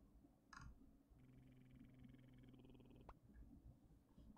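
Near silence: room tone, with a faint buzzing hum lasting about two seconds and a single faint click near the end.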